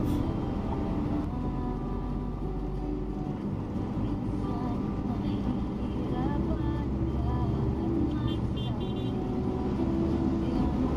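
Low, steady engine and road rumble inside a car cabin moving through city traffic, with short horn toots from the traffic outside.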